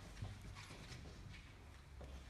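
Faint, irregular light knocks over a low steady hum.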